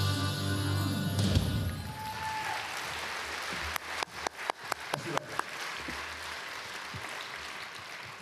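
Band music with drums ends on a final chord about a second in, followed by audience applause, with a few sharp individual claps in the middle.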